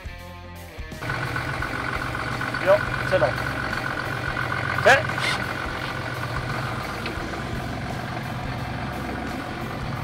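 Boat engine idling steadily, coming in after a short stretch of music about a second in, with a few brief voice sounds over it.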